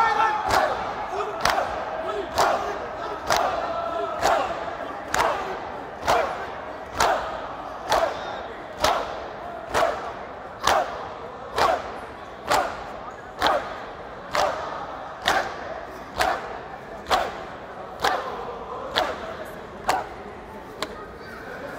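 A gathering of mourners doing matam, beating their chests in unison in a steady rhythm of about one slap a second, with a crowd's voices calling between the strokes.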